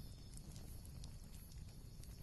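Faint steady background noise with a low rumble and a few faint scattered ticks: a near-silent pause.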